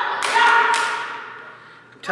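Two sharp hand claps about half a second apart, each ringing briefly in a large hall, just after a short vocal sound fades.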